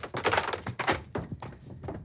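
A quick run of knocks and plastic clatter as a video-game console, its cartridge and controllers are hurriedly handled and gathered up off a table.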